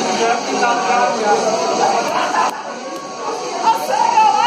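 Many people talking and calling out at once, an unintelligible group chatter, with music playing underneath; it dips a little for about a second past the middle.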